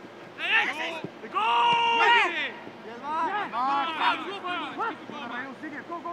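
Men's voices shouting and calling out across a football training pitch, with one long held shout about a second and a half in.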